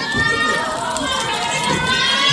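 Audience of fans calling out and chattering at once, many high overlapping voices blending into a steady crowd din.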